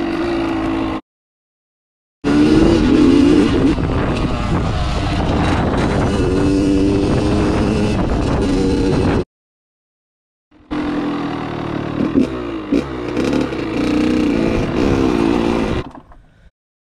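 Dirt bike engine running and revving as the bike rides up a dirt trail, its pitch rising and falling with the throttle. The sound cuts out to dead silence twice, about a second in and about nine seconds in, for a second or so each time.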